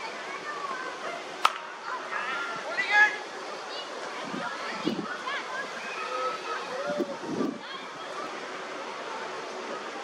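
Distant voices of cricket players calling out across an open field over a steady outdoor hiss. A single sharp knock comes about a second and a half in, as a delivery reaches the batsman, and a louder shout follows near 3 seconds.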